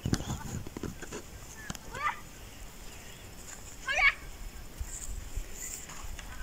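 Faint knocks of cut cassava stems being handled in dry soil, with two short rising calls about two seconds apart.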